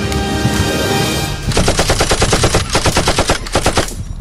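Music for about a second and a half, then three bursts of rapid automatic gunfire, each a fast even string of sharp shots with short breaks between bursts.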